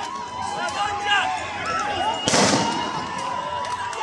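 Crowd of protesters shouting, many voices overlapping, with a single loud bang a little over two seconds in.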